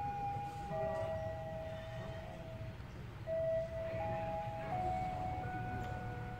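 A slow, simple melody of sustained electronic tones stepping between a few pitches, over a steady low rumble.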